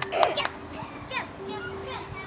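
Children playing: scattered young voices making short calls, with a few sharp knocks near the start.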